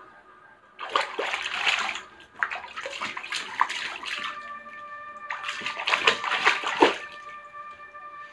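Water splashing and sloshing in a small inflatable paddling pool as a toddler kicks her legs, in three bouts of a second or two each.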